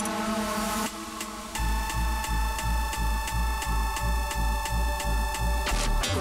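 Bass-heavy electronic dance music in a DJ mix: a short quieter stretch with a hissing sweep, then about a second and a half in a buzzing synth bass comes in over a steady pulsing low bass and a held high note.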